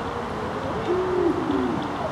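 A voice giving a drawn-out, wavering hoot-like call, about a second long near the middle, over steady outdoor background noise.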